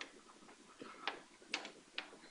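Faint, scattered light ticks and taps, about five in two seconds, from writing on a lecture board.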